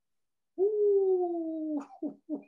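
A man's drawn-out falsetto "ooh" hoot, one held note gliding slightly down for about a second and a half, then breaking off.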